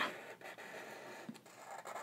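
Faint scratching of a black permanent marker's felt tip drawing lines on paper, with a few light ticks.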